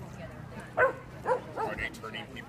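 A dog barking three or four times in quick succession in the second half, over a background of crowd chatter.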